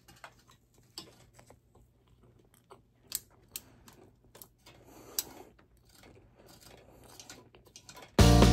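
A person biting into and chewing a mouthful of brownie close to the microphone: faint, irregular soft clicks and smacks of the mouth.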